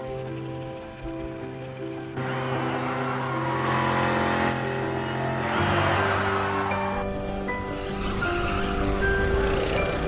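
A background music score of sustained notes, with a car's tyres squealing as it drifts from about two seconds in until about seven seconds.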